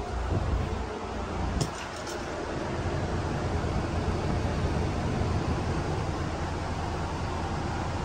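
Steady rush of air with a low hum underneath inside a Toyota Hiace van's cabin, the sound of its air conditioning running. A couple of faint ticks come about two seconds in.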